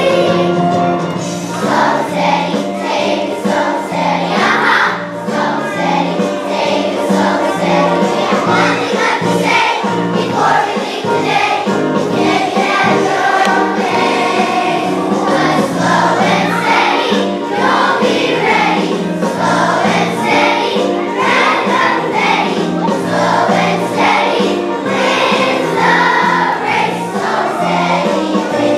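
A third-grade children's choir singing in unison, with instrumental accompaniment that has a steady, stepping bass line.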